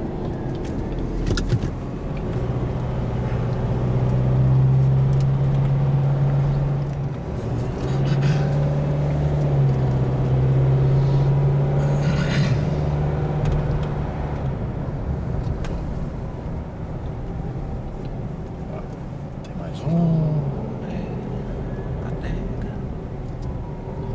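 Car engine and road noise heard from inside the cabin while driving, with a steady engine drone through the first half that breaks briefly about seven seconds in and fades after about fourteen seconds.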